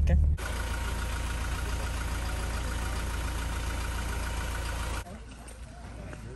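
Steady engine and road noise inside a moving vehicle, with a low rumble and a faint steady whine. It starts abruptly just after a short spoken word and cuts off suddenly about five seconds in, giving way to a quieter outdoor background.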